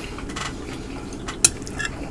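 Chopsticks clicking once, sharply, against a plate about one and a half seconds in.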